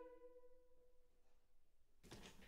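The last held chord of a choir dies away in the studio's reverberation over about the first second, then near silence: room tone.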